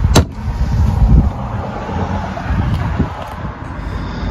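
A plywood storage-cabinet flap shuts with one sharp wooden knock just after the start. It is followed by rumbling handling noise and a few dull thumps as the phone is carried toward the back of the van.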